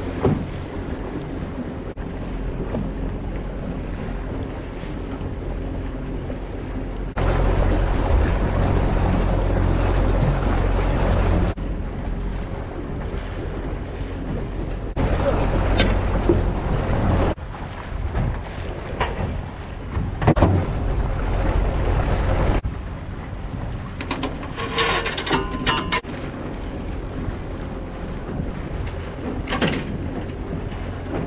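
Outboard motor running steadily as the boat moves, with water rushing past the hull and wind gusting on the microphone several times. Near the end come a series of sharp knocks and clatter in the boat.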